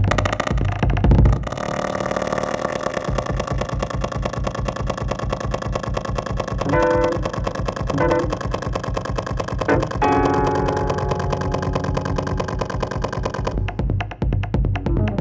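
Live electronic music from a keyboard and electronics setup: a fast, even low pulse under held electronic tones, with short pitched chord stabs about seven, eight and ten seconds in.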